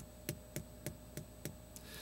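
Faint, sharp clicks repeating about three times a second, over a faint steady hum.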